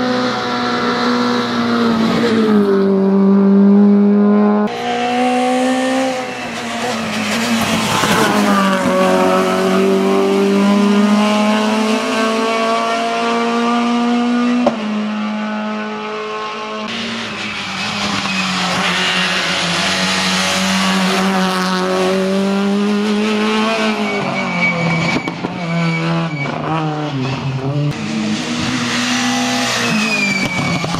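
Peugeot 208 rally car's engine revving hard under full throttle. The pitch climbs and falls again and again as it shifts gears and slows for the bends.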